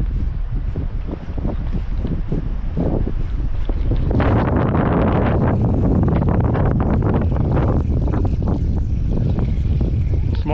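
Wind buffeting the microphone over open water, a loud low rumbling noise that grows heavier and rougher about four seconds in.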